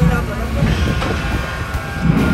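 Subway train running on the rails, a steady low rumble, with voices over it.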